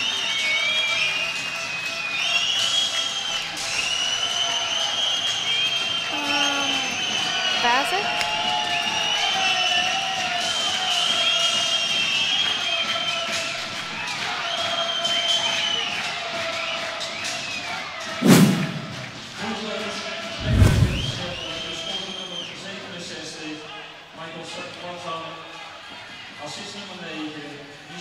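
Ice hockey arena sound: music playing over the public address with crowd voices underneath, and two heavy thuds about 18 and 21 seconds in, the loudest sounds in the stretch.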